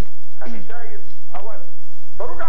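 Speech only: a man talking in Arabic in short phrases with brief pauses.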